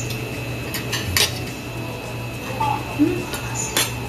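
Forks and spoons clinking and scraping on ceramic plates as two people eat, with a few sharp clinks, the loudest about a second in and just before the end.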